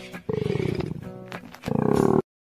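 Male koala bellowing: two loud, rasping calls made of rapid pulses, the first about a quarter second in and the second near the end, over background music.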